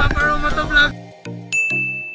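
Background music with a pulsing beat; about one and a half seconds in, a bright bell-like ding rings out and holds steady, the sound effect of an on-screen subscribe-button graphic.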